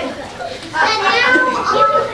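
Children's voices: a child calls out loudly and high-pitched from about a third of the way in, the words not made out.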